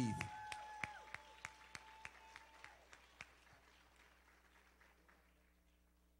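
Scattered applause from a small audience, thinning out and fading away over about three seconds. A steady high tone is held through the first couple of seconds and then cuts off.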